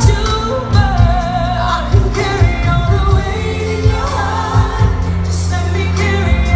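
Live soul and pop music: a female lead vocal with wide vibrato, backed by other voices, over a band with heavy bass and steady drums.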